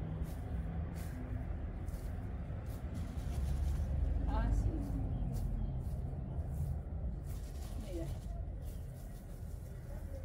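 Grass seed thrown by hand onto damp bare soil, a faint patter with each throw, over a steady low background rumble.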